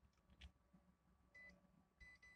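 Near silence apart from one short, high beep about one and a half seconds in: a handheld digital multimeter beeping as its selector dial is turned.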